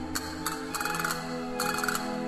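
Castanets played in rapid rolls, three short bursts of fast clicks, over an orchestra holding sustained chords.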